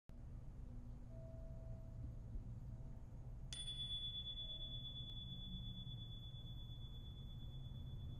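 A single high, clear bell-like tone, struck once about three and a half seconds in and left ringing steadily, over a low steady hum.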